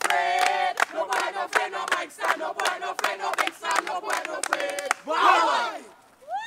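A group of young voices chanting in unison over a quick beat of sharp percussive hits. About five seconds in it ends in a loud group yell that falls in pitch.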